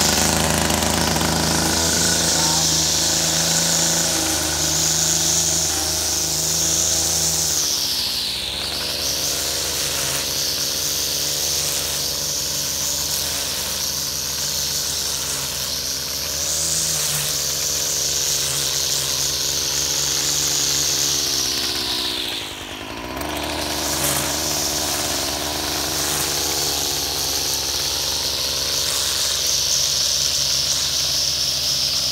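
Stihl petrol-engine lawn edger running hard while its blade cuts a circular edge through turf and soil. The engine speed dips and recovers twice, briefly about a third of the way through and more deeply about three quarters through.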